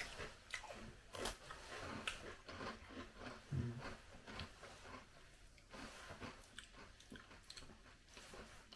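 Breadsticks being bitten and chewed close to the microphone: faint, irregular crunches, with a short closed-mouth hum partway through.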